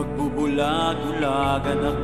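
Tagalog pop love ballad: a voice sings a drawn-out, gliding phrase over steady instrumental backing with a sustained bass.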